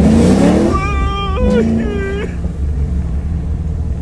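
Car engine rising in pitch as it accelerates hard, over a steady deep drone heard inside the cabin. A man lets out two high-pitched frightened wails, about a second in and again around two seconds.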